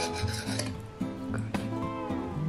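A table knife cutting through a soft minced-meat roll and scraping on the plate, a rasping scrape in the first half second and a couple of sharp cutlery clicks about halfway through, over soft background music.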